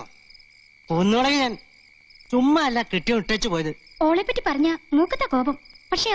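Crickets chirring steadily as a high, unbroken background tone, with bursts of dialogue over it about a second in, around three seconds in, and in the second half.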